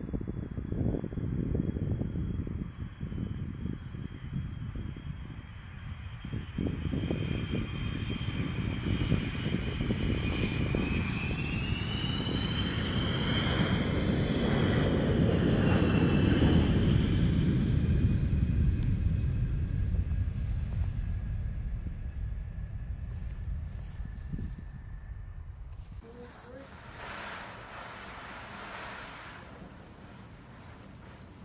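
KC-135 Stratotanker's four jet engines coming in to land and rolling past on the runway: a deep rumble under a high whine. The whine bends in pitch as the plane passes, the sound building to its loudest about halfway through and then fading away.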